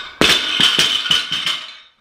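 A loaded barbell with rubber bumper plates is dropped from overhead onto the lifting platform. It lands with one heavy impact, then bounces and rattles several more times in quick succession, dying away with a metallic ring.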